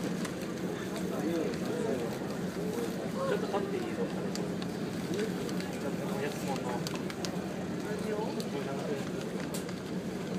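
Indistinct chatter of passengers' voices inside a ferry's cabin over the steady low hum of the ship's engines.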